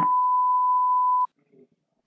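A single steady electronic beep tone, held for about a second and a quarter and then cutting off sharply.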